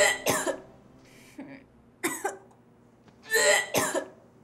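A person coughing and clearing the throat: four short, harsh bursts spread over a few seconds, the last one longer.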